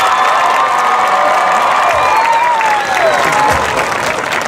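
Stadium crowd cheering and applauding, with many voices shouting over one another.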